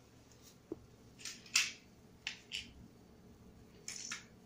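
Handling noises from a cardboard toy box and small plastic building-brick toys: a few short scrapes and clicks, the loudest about one and a half seconds in.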